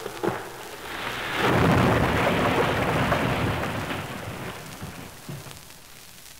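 Rumbling crash sound effect of the beanstalk and the giant falling to the ground, from a 1952 78 rpm record. It swells up about a second in and dies away slowly over several seconds.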